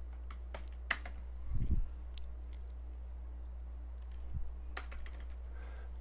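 Computer keyboard typing: a few scattered, irregular keystrokes over a steady low hum, with a brief low sound about one and a half seconds in.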